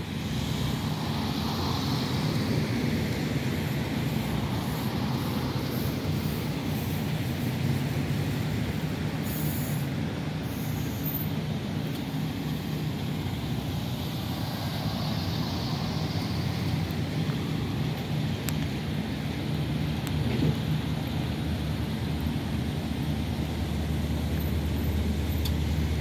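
Street traffic: a steady low engine idle, with vehicles driving past close by, one passing about a quarter of the way in and another just past the middle.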